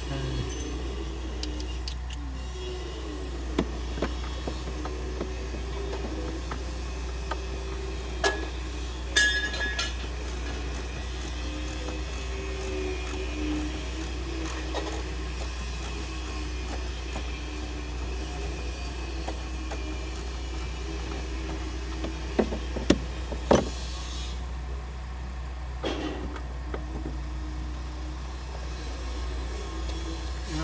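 Scattered knocks and clicks from hands working over and behind a truck's dashboard for its hidden bolts, over a steady low hum. The loudest knocks come in a quick cluster a little past two thirds of the way through.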